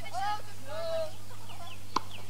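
Bird calls in the background: a few short rising-and-falling notes, then brief high chirps near the end, over a steady low hum.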